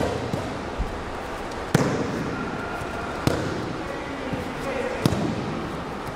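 Three sharp slaps of a body hitting the mat as an aikido partner is thrown and pinned, each a second and a half or so apart, over the hubbub of a large gym hall.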